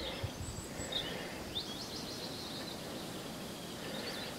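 Faint outdoor background with small birds chirping: a few short high chirps in the first second and a quick twittering run of notes around the middle.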